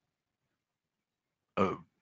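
Silence, then a man's brief hesitant "uh" near the end.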